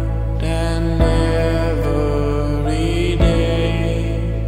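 Slow song: a steady bass and sustained chords under a sung melody that glides in pitch, with a low thump about a second in and another about three seconds in.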